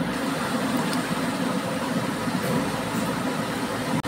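A steady, low background hum runs throughout with no speech, unchanging in level.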